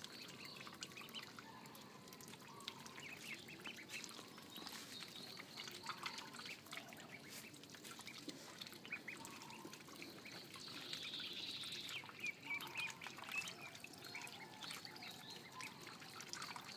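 A flock of ducklings peeping: many short, high calls, faint and scattered.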